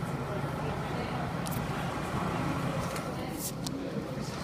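Steady low ambient rumble with indistinct voices of people close by, and brief crackles on the microphone about one and a half and three and a half seconds in.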